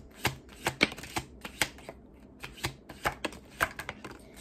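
A tarot deck being overhand-shuffled by hand: an uneven run of short card slaps and clicks, about four a second.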